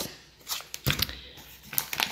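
A few short rustles and crinkles of food packaging being handled, a foil sachet and a cardboard takeaway box: a cluster of small sounds about half a second to a second in, and another just before the end.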